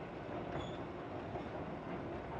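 Steady street background noise, a low rumble and hiss with no distinct event, and a faint short high tone about half a second in.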